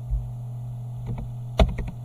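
A few computer keyboard key presses, the loudest about one and a half seconds in, over a steady electrical hum.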